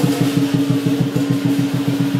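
Chinese lion dance drumming: a drum beating a fast, even roll of about eight strokes a second, with a steady held tone ringing underneath.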